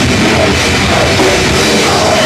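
Live band playing loud heavy rock, with a drum kit driving it, in a continuous wall of sound.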